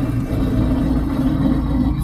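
YuMZ tractor's diesel engine running steadily under way, heard from the driver's seat.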